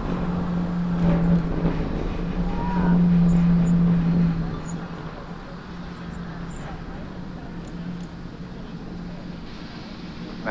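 Distant low rumble of a Falcon 9 rocket's nine Merlin 1D first-stage engines climbing away, heard from the ground. It is louder for the first four seconds or so, then falls off to a quieter steady rumble.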